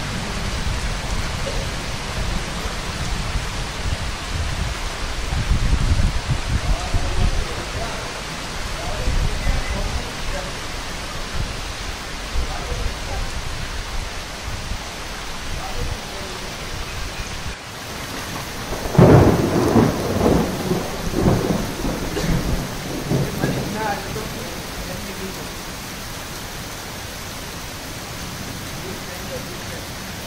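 Heavy rain falling steadily, with low rumbles that swell around six seconds in and again, loudest, from about nineteen to twenty-four seconds in.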